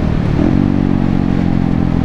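Honda Grom's 125 cc single-cylinder four-stroke engine running at a steady cruising speed, with wind and road noise rushing over the handlebar-mounted microphone.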